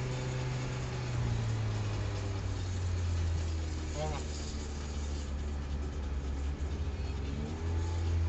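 Ford Cosworth engines idling at the drag-strip start line, heard from inside a car's cabin as a steady low drone that settles lower about two seconds in. A short rev near the end.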